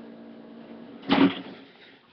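A steady electrical hum from a device being switched off, with one short thump about a second in, after which the hum dies away.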